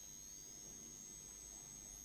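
Near silence between spoken phrases: faint room tone with a steady, thin high-pitched whine and a faint tone slowly rising in pitch.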